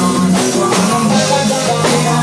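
Live rock band playing loudly and steadily, with electric guitar over a drum kit.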